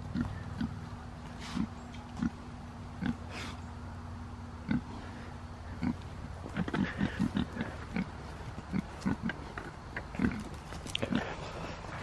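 A young spotted pig grunting as it roots and forages. The grunts are short and scattered, with a quick run of them about seven seconds in.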